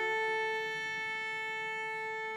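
Cello playing one long, soft bowed note, held at a steady pitch.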